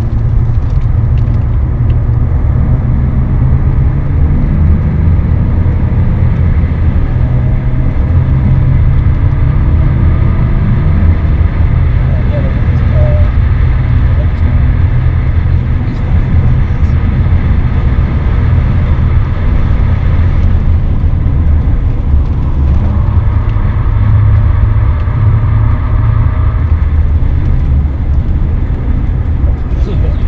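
BMW 530d's straight-six turbodiesel engine and road noise heard from inside the cabin while the car is driven hard, a loud steady low drone. The engine note rises and falls a few times as the car accelerates and slows for corners.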